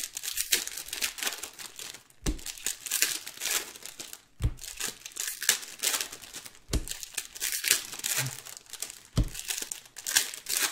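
Foil trading-card packs crinkling and tearing as hands open and handle them, with a soft low knock about every two seconds.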